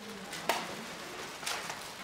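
Rustling of clear plastic kit packaging as a crafter handles wire cutters and a spool of craft wire, with two sharp clicks about a second apart.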